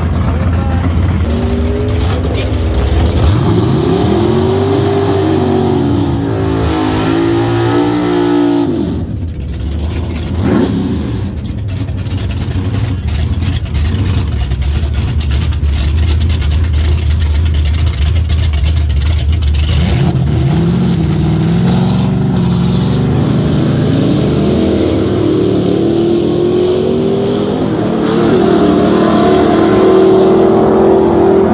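Drag-race car engines at a drag strip: an engine revs up and down, with tire smoke drifting at the start line, and drops away about nine seconds in. The engines then run at a steady idle before another engine's revs climb again from about twenty seconds in.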